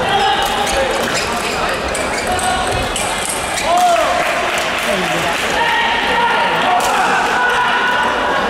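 Celluloid-plastic table tennis ball clicking off bats and table in short knocks, over steady chatter of voices echoing in a large sports hall.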